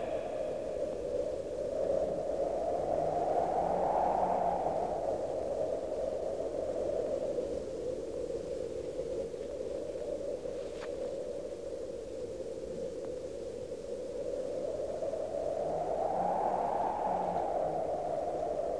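A steady, wind-like rushing noise that swells and rises slightly in pitch twice, a few seconds in and again near the end.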